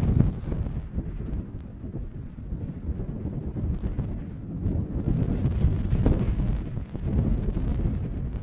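Wind buffeting the microphone: a low rumble that rises and falls with the gusts.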